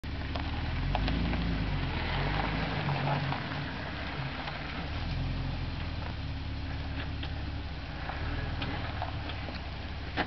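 Jeep Wrangler engine running at low revs as it noses up a dirt bank and rolls back off it, louder over the first three seconds or so, with scattered clicks of gravel and stones under the tyres.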